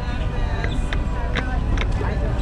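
Outdoor crowd ambience: chatter of people walking past, over a steady low rumble, with a few sharp taps about half a second apart.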